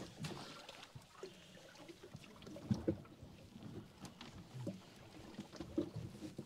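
Water lapping against the hull of a small boat, with a few soft knocks and handling noises as a mesh burley bag is lowered over the side and its string tied off at the rail.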